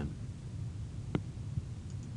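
Low steady hum of recording background noise in a pause between narration, with one short click about a second in.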